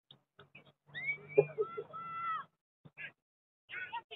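A long, high-pitched shout from a player or spectator on a youth soccer pitch, lasting about a second and a half, with a single sharp thump of the ball being kicked in the middle of it. Short scattered calls and noises come before and after.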